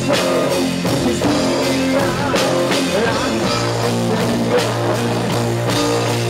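Live rock band playing an instrumental section of a power ballad, with no vocals: a bending electric guitar lead over sustained bass notes, drum kit and keyboards.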